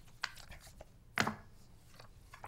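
Sheets of paper being handled and turned over on a desk close to a microphone: a few short rustles and crackles, the loudest about a second in.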